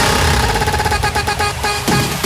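House music without vocals: the held synth chords drop away and a quick, even run of percussion hits carries the track, over a low bass note in the first second.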